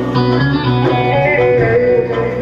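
Turkish folk dance tune: a bağlama playing a quick plucked melody over sustained bass notes from keyboard backing.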